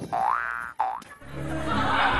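A cartoon-style 'boing' sound effect: a springy rising glide, then a shorter second one just under a second in, followed by background music.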